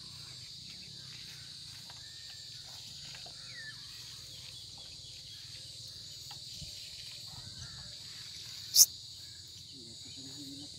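A steady high-pitched chorus of crickets. About nine seconds in, one brief sharp squeak sweeps upward and is the loudest sound.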